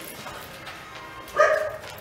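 Young Rottweiler giving one short high-pitched whine about one and a half seconds in, while sitting and looking up for a treat.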